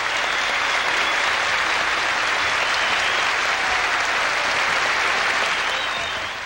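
Concert audience applauding steadily at the end of a song.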